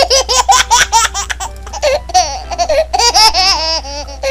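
Young children laughing and squealing in high, excited bursts, several voices together, with a steady low hum beneath.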